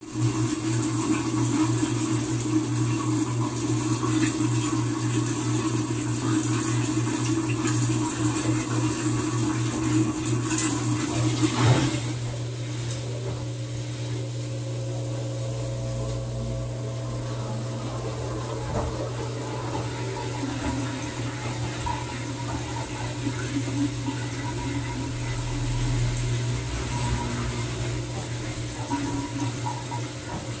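TCL TWF75-P60 front-load inverter washing machine tumbling a wet bedding load, with water rushing and sloshing in the drum over a steady low hum. The rushing noise drops off sharply about twelve seconds in, leaving the hum and softer churning.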